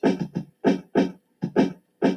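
Hip-hop DJ scratching: a short sample cut in and out in quick rhythmic stabs, about four a second, with silence between each.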